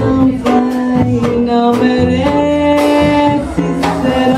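Live jazz quartet: a woman singing long held notes, with plucked upright bass, piano and drums keeping time underneath.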